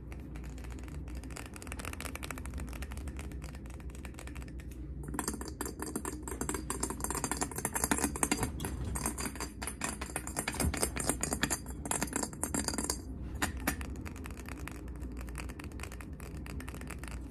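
Fast fingernail tapping on a glass jar candle, a rapid run of light clicks. About five seconds in the tapping moves onto the jar's black lid and turns louder and brighter, then eases back about three seconds before the end.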